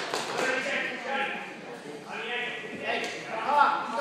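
Indistinct voices of spectators and coaches talking and calling out in a gymnasium, with no single clear voice.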